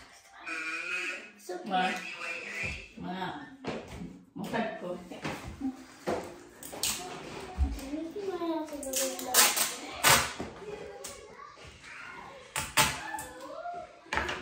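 Children's voices talking, with a few short handling clicks between the words.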